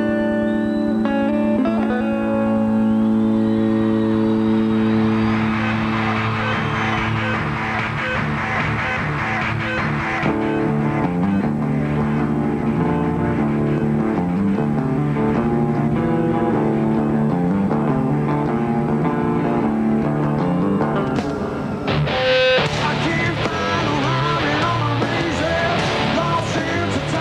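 Rock band playing live: a lone electric guitar opens with held, ringing notes, and a rhythmic riff with bass builds up from about ten seconds in. Near the end the full band comes in with heavy hits and the vocals start.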